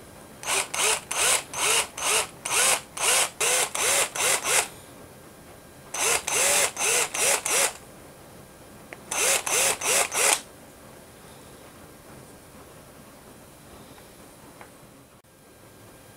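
Cordless drill with a small bit, triggered in quick short pulses of about three a second, each a brief spin-up, boring a starter hole for the eye in a carved wooden lure body. The pulsing comes in three spells, a long one, then two shorter ones.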